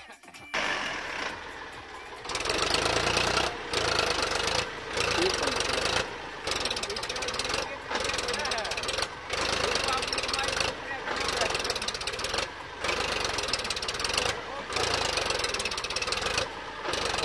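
Powertrac 434 DS tractor's diesel engine working hard under load, hauling a trolley heaped with sand up out of soft sand.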